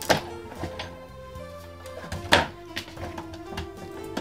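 Background music with two sharp knocks as cutting mats are lifted off and handled on a fabric die-cutting machine. The first comes just after the start, the second a little over two seconds in, with fainter clicks between.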